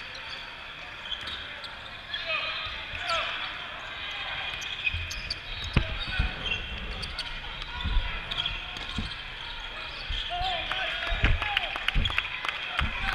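A basketball game on a plastic tile court in a large hall: the ball bouncing with sharp thuds several times in the second half, sneakers squeaking, and spectators and players talking and calling out.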